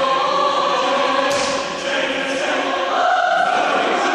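Men's choir singing sustained chords in a large, reverberant stone chapel, with a sharp attack about a second in and the chord moving higher near the end.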